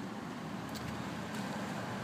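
Faint, steady outdoor background noise with a low hum and no distinct events.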